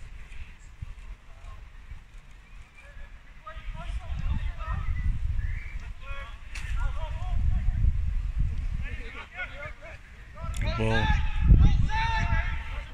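Players shouting calls to each other across an open football pitch, in short bursts that grow loudest near the end, over a steady rumble of wind on the microphone.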